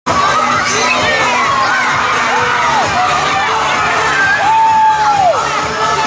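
A group of young children shouting and cheering together, with one voice holding a long high cry about four and a half seconds in that falls away a second later.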